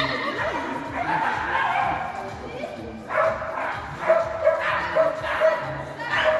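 Small dog barking repeatedly while it runs, in a quick series of short barks in the second half, with people's voices alongside.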